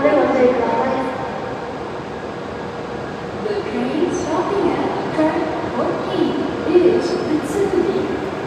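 Station public-address announcement in a woman's voice, echoing through the platform hall over steady platform background noise, with a lull of a couple of seconds near the start.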